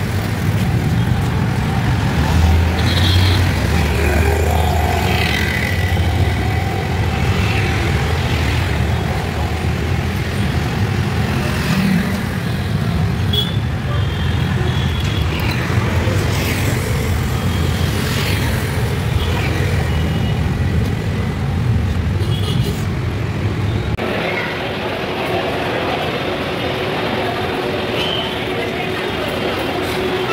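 Road traffic: a steady low rumble of passing vehicles with a few short horn toots. About 24 seconds in, the rumble drops away, leaving a quieter steady hum.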